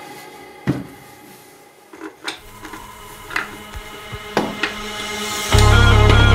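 A wooden jig plate and trim router being handled and set down on a workbench: a few sharp knocks with quiet between them, while the earlier music fades out. About five and a half seconds in, loud electronic music with a deep bass starts abruptly and is the loudest sound.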